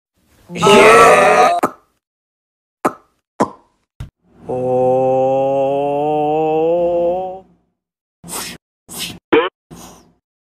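Cartoon voice sounds and sound effects: a loud, strained cry about half a second in, then three short pops, then one long held vocal note that slowly rises in pitch for about three seconds. Several short sounds follow near the end.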